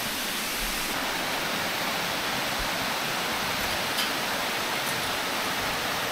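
Small waterfall cascading over stepped rock ledges: a steady, even rush of falling water, with a few faint clicks in the second half.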